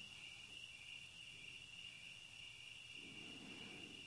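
Near silence, with crickets trilling faintly and steadily at a high pitch.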